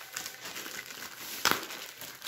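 Plastic courier mailer bag crinkling as it is pulled open by hand, with one loud sharp crackle of the plastic about one and a half seconds in.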